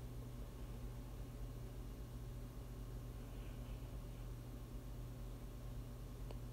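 Quiet room tone: a faint steady low hum with light hiss, no distinct event.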